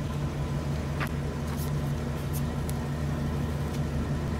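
An RV's engine running steadily at low road speed, heard from inside the cab as an even, low drone, with a few light clicks or rattles scattered through it.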